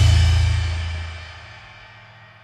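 Noise-rock band with baritone guitar and drums letting a held low chord and cymbal ring out, fading steadily over about a second and a half to a faint tail.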